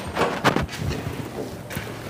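Sliding bolt latches on an aluminium door being worked by hand: a few light metallic clicks and rattles, about half a second in and again near the end.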